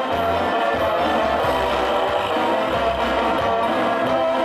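Live dance-band music at full volume, with a bass line moving in long held notes under a dense band sound.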